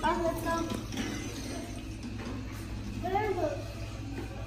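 Short indistinct voices, one at the start and a brief rising-then-falling vocal sound about three seconds in, over a steady low hum.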